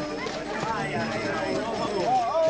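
Several people's voices overlapping in loud group chatter and calls.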